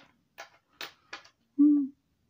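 A man's sing-song voice: a few short breathy, whispered sounds, then a short held sung note near the end.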